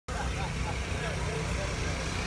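Outdoor background of a steady low engine rumble, with faint distant voices.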